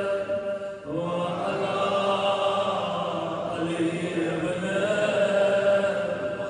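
A man's voice chanting a slow religious recitation in long, drawn-out held notes, with a short break just before a second in.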